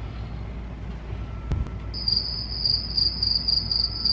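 Cricket chirping: a high, rapidly pulsing trill that starts about halfway through and carries on to the end, over a low steady hum, with one short click just before it.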